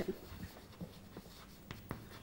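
Chalk writing on a blackboard: faint taps and scratches as a word is chalked, with a few sharper ticks near the end.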